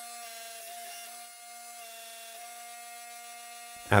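Hydraulic forging press's electric motor and pump running, a steady low-level hum made of a few fixed tones.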